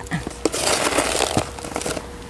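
A crinkling, rustling noise of something being handled, starting about half a second in and lasting well over a second, with a couple of light clicks.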